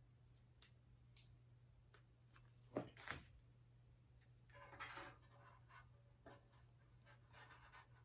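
Near silence: room tone with a few faint clicks and rustles of hands at work, the loudest pair about three seconds in.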